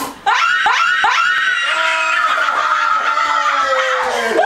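Several people screaming and laughing together in excitement at a dart throw. There is a brief dip just after the start, and then the overlapping high-pitched shrieks and laughter run on loudly.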